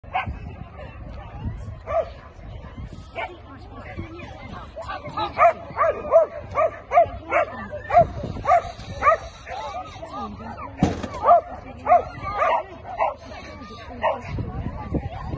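A dog barking over and over in short, high barks, about two a second from about five seconds in, with people talking in the background.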